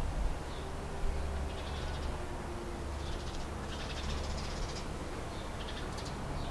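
Quiet background of a steady low hum, with a few faint, short, high-pitched animal calls scattered through it.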